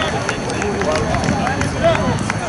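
Several raised voices shouting over open play in an outdoor rugby match, players' calls and touchline shouts overlapping.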